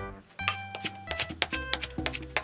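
Background music with steady high notes, over a series of light knife taps from a chef's knife chopping green onion on a wooden cutting board.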